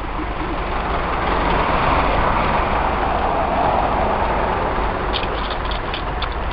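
A motor vehicle passing on the highway close by, its engine and tyre noise swelling over the first couple of seconds and easing off toward the end, over a steady low rumble.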